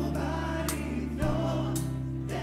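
A worship song played on an electronic keyboard and guitar, with held low chords, a strum about once a second, and voices singing along.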